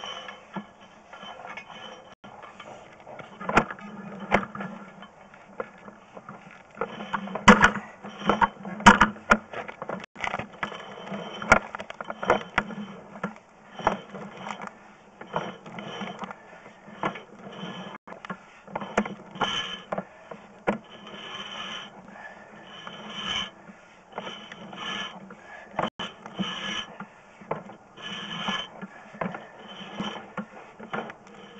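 Sewer inspection camera's push cable being pulled back out of the line and onto its reel: an irregular run of clicks and clacks over a steady low hum.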